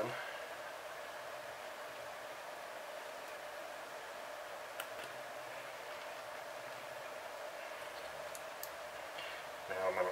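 A quiet, steady room hum, with a faint click about five seconds in and a couple more near the end as the piston of a Saito 45S four-stroke model engine is worked back into its cylinder by hand.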